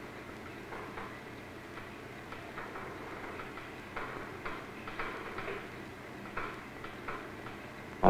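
Faint, irregular ticks and light clicks over a steady low hum and hiss.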